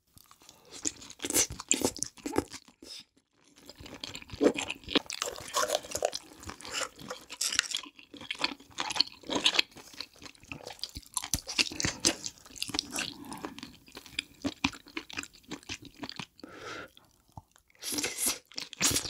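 Close-miked chewing and crunching of seafood in thick chili sauce: wet, irregular mouth and bite sounds with brief pauses about three seconds in, about eight seconds in and near the end.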